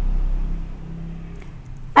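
A low rumble with a faint steady hum that fades away over the first second and a half.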